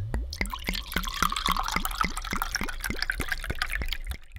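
A liquid glugging sound effect: a steady, even run of bubbly blips, each rising in pitch, about four to five a second, over a watery hiss.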